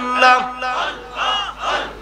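A group of men chanting zikr together, repeating a short devotional phrase in a steady rhythm of about two calls a second, with many voices overlapping.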